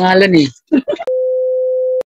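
A short stretch of speech, then a steady single-pitch electronic beep held for about a second that cuts off suddenly.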